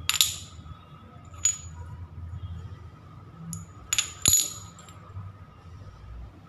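Small glazed ceramic tiles clinking as they are handled and set down: a handful of sharp clicks with a brief ring, the loudest two close together about four seconds in.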